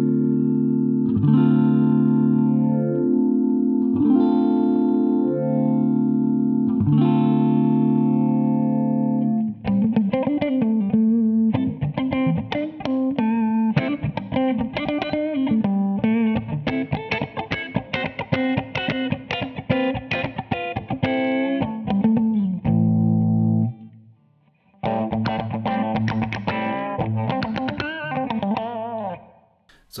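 Electric guitar played through a MayFly Audio Sketchy Zebra vibrato/phase shifter in manual mode, which gives a fixed filtered tone like a cocked wah. It opens with held chords struck about once a second, then turns to busier, faster picked playing, with a short break a few seconds before the end.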